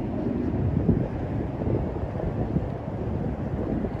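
Wind buffeting a handheld camera's microphone outdoors: a steady, uneven low rumble.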